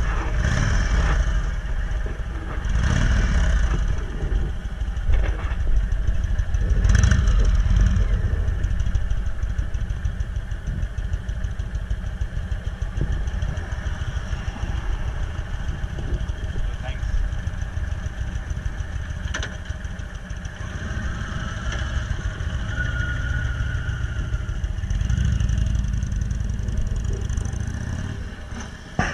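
Big V-twin engines of Indian cruiser motorcycles idling in a steady low rumble, swelling a couple of times in the first eight seconds.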